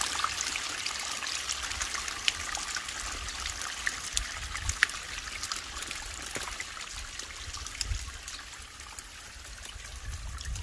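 Water trickling and splashing from the spout of a homemade cement garden waterfall into its stone basin, a steady patter of small drips and splashes.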